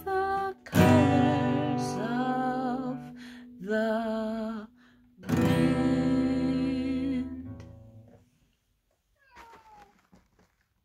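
Acoustic guitar strummed by hand with a single voice singing the closing line of a song; the final chord rings out and fades away about eight seconds in. A few faint handling sounds follow near the end.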